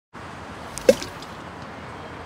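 A single water drop plopping, just under a second in, with a few small clicks around it, over a steady background hiss.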